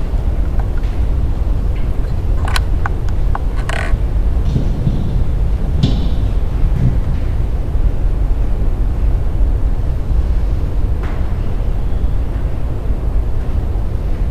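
Steady low rumble of room and recording noise in a hall, with a few sharp clicks and knocks about three to four seconds in and faint small sounds a little later. No music or singing.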